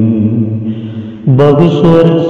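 A Malayalam patriotic poem recited in a slow, chant-like sung voice. A held note fades, then a new phrase begins a little over a second in.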